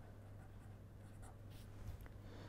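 A pen writing on paper, faintly scratching, over a low steady hum.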